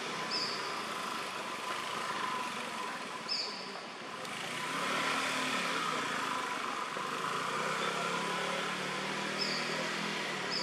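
Outdoor ambience with a distant motor vehicle engine, which comes up louder about four seconds in and keeps running. A few short high chirps sound over it.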